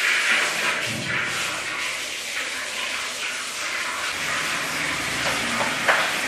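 A steady hissing noise with no clear rhythm or pitch.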